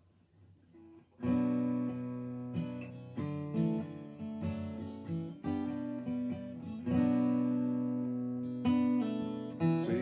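Old Martin acoustic guitar, capoed, opening a song: after about a second of quiet, strummed chords begin and ring out, with a new chord struck every second or so.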